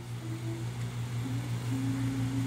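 A steady low machine hum with a constant pitch, unchanging throughout.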